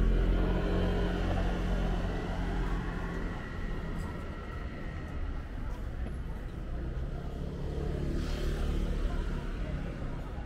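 City street traffic: a motor vehicle's engine hum passing close, loudest at the start and fading over the first few seconds, then a second vehicle swelling up around eight seconds in, over steady street noise with people's voices.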